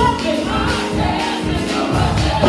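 Gospel music: a group of voices singing together over instrumental backing.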